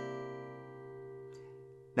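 Steel-string acoustic guitar's C7 barre chord, fretted at the third fret, ringing out after a single strum and slowly fading until it is nearly gone.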